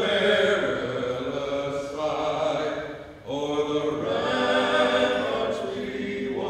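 A small group of men singing a cappella, holding long chords, with a brief break about three seconds in before the next phrase.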